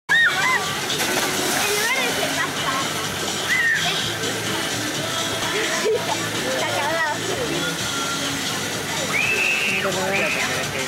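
Busy water park crowd: children's high shouts and squeals over the steady rush and splash of water, with one long high shout near the end.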